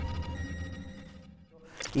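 Tail of an electronic intro sting: a low hum with a few steady tones above it, fading away over about a second and a half, then a short rising glitchy whoosh just before a man starts speaking.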